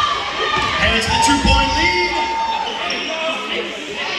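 A basketball being dribbled on a wooden gym floor, with its bounces thudding, over the chatter of a crowd of spectators.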